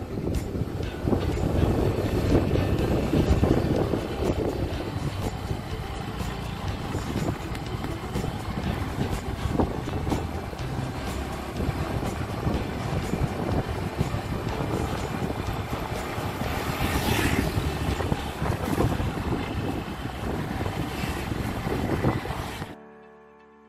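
Motorcycle riding noise: wind rushing over the microphone together with the running bike and tyres on the road, a steady rough rush.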